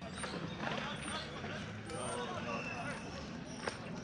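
Faint, indistinct talking over a steady low rumble of city street background.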